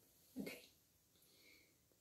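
Near silence: quiet room tone, with a faint, brief high-pitched sound about one and a half seconds in.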